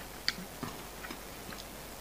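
Faint mouth clicks and smacks of someone chewing a mouthful of instant noodles with the mouth closed: a handful of small, scattered clicks, the clearest one early.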